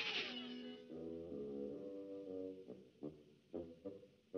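Quiet orchestral cartoon underscore. A crash dies away at the start, then come a few soft held notes, and in the last second or so a run of short, detached notes.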